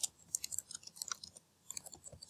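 Computer keyboard being typed on: a fast, uneven run of faint, light key clicks.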